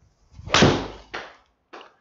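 A golf iron swishing down and striking a ball off a hitting mat, with a sharp strike about half a second in. A softer knock follows about half a second later, and a faint one near the end.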